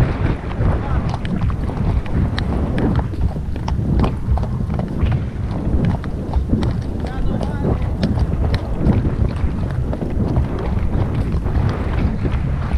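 Horse hoofbeats on a dirt track, an irregular run of knocks from horses moving along at pace, under a steady rumble of wind on the microphone.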